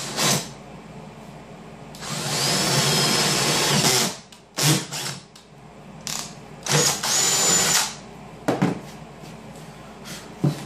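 Electric drill boring a starter hole through a particleboard table top, to start a jigsaw cut-out. It runs in several bursts with a steady whine: a brief one at the start, a long run of about two seconds, a few short blips, then another run of about a second.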